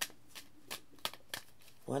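A deck of tarot cards being shuffled by hand: a string of soft, separate card clicks, about half a dozen in under two seconds.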